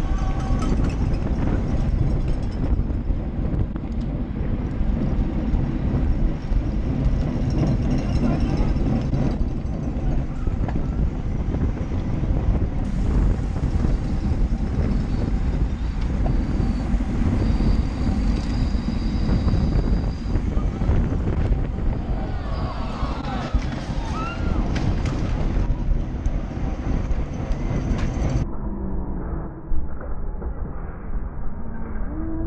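Wind buffeting the microphone of a bike-mounted action camera riding at speed in a bicycle race pack, a steady rumbling rush with tyre and road noise. Spectators' voices and shouts come through faintly behind it.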